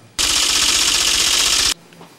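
A transition sound effect between narrated segments: a dense, rapid rattle about a second and a half long that cuts off sharply.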